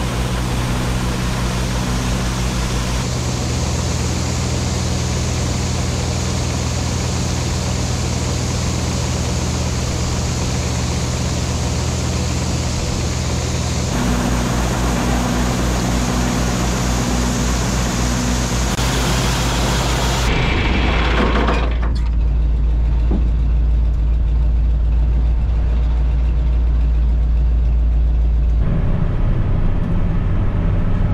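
Tractor engine running a PTO-driven grain auger while soybeans pour from a tandem truck into its hopper, a steady engine hum under a dense rushing hiss. About twenty seconds in, the hiss dies away, leaving the low hum of the engine idling.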